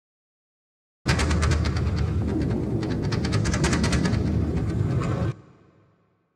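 A harsh burst of dense, rattling noise over a heavy low rumble, with fast irregular pulses. It starts abruptly about a second in, runs for about four seconds, then cuts off sharply and leaves a short fading tail.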